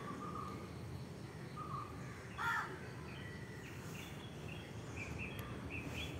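Birds calling over a low, steady outdoor rumble: short scattered calls, with one louder call about two and a half seconds in.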